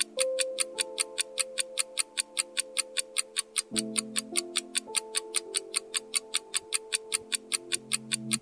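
Countdown-timer ticking sound effect, about four sharp ticks a second, over soft background music with sustained chords that change about halfway through.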